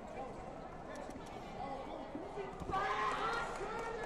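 Many voices of spectators and coaches shouting around a taekwondo mat, swelling into a louder burst of shouting about three seconds in as a point is scored, with scattered light taps from the fighters' feet on the mat.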